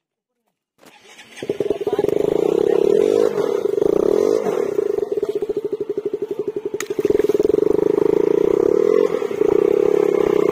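KTM RC 390's single-cylinder engine revving hard and held under load as the bike is pushed out of deep mud where it is stuck, starting about a second in. A sharp click cuts in once near the middle.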